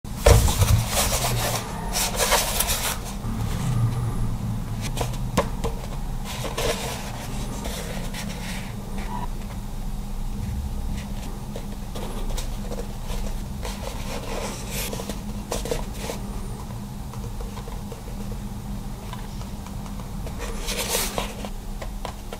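Small cardboard retail box being handled and turned over in the hands: scattered rubs and scrapes of fingers on cardboard, busiest in the first few seconds and again near the end, over a steady low hum.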